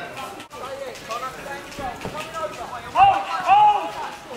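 Shouted voices calling out across an outdoor football pitch, with two loud drawn-out calls near the end. The sound breaks off for an instant about half a second in.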